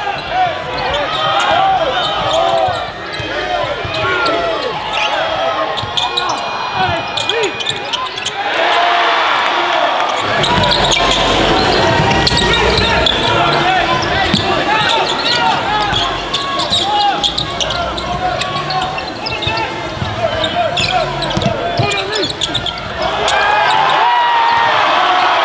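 Indoor basketball game sound: a crowd's many voices in a large hall, with a basketball bouncing on the court; the crowd gets fuller about ten seconds in.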